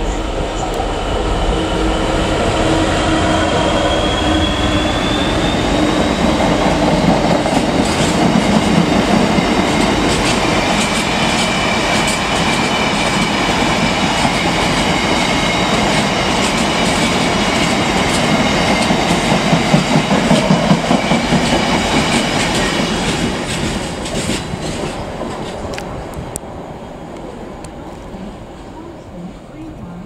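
Freight train hauled by a Class 66 diesel locomotive running through the station with a long rake of box wagons: a loud steady rumble and wheel clatter, with clicks over rail joints and a thin high squeal from the wheels. It fades near the end as the last wagons pull away.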